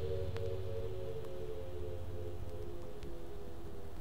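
Acid / hard trance electronic track, its closing stretch: a repeating pattern of sustained synth notes over a low drone that fades away early on, with no clear drum beat and a few faint clicks.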